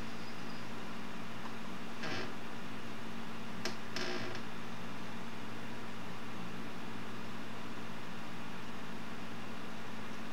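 Steady low hum over room noise, with a few short noises, a sharp click among them, about two and four seconds in.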